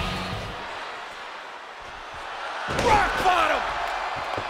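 Arena crowd noise dies down, then about three seconds in a wrestler's body slams onto the ring mat. Loud crowd and voice reaction follows at once.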